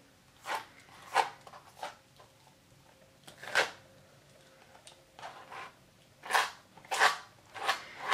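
Palette knife scraping glass bead gel mixed with acrylic paint across heavy paper, in about nine short, unevenly spaced strokes. The tiny glass beads in the gel give each scrape a gritty, sand-like sound.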